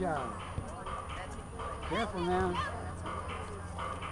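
Spectators' voices shouting at a soccer match. There is a falling yell at the start and a drawn-out call about two seconds in that rises and then holds its pitch, over a low steady rumble.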